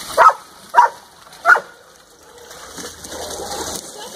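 A dog barks three times in the first second and a half, the barks about half a second apart.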